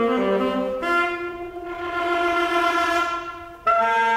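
Solo alto saxophone playing: a quick run of short notes, then one long held note that fades away, and a sudden loud new phrase just before the end.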